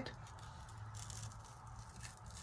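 Faint crackling of an adhesive screen-printing stencil being peeled slowly off a wooden panel, its letters freshly filled with torch paste.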